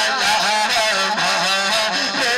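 A man singing a naat, an Urdu devotional poem, into a microphone, in long ornamented melodic lines that bend and waver up and down.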